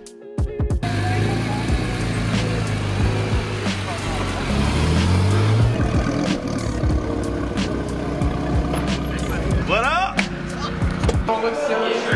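A car engine running and revving, its pitch rising about four seconds in, mixed with music.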